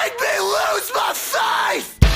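A yelled vocal line from the metalcore backing track, its pitch swooping up and down in short repeated phrases, with no drums under it.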